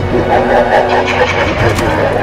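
Several children laughing loudly together.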